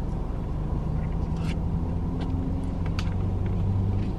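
Car engine idling, heard inside the cabin: a low, steady rumble with a few faint, short clicks over it.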